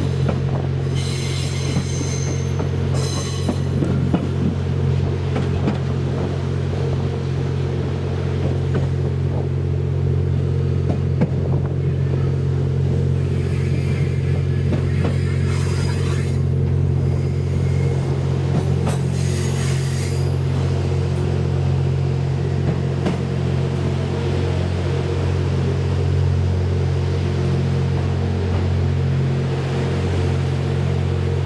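Twilight Express Mizukaze (JR West 87 series hybrid) running, heard from its rear observation deck: a steady low drone of the train's diesel generator engines and wheels on rail. High-pitched wheel squeals come and go several times, about a second in, in the middle and around twenty seconds in.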